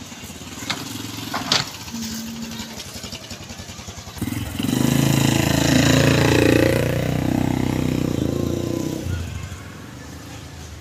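Small motorcycle engine running as it passes close by, loudest from about four seconds in until it fades near the end; two sharp clicks sound in the first two seconds.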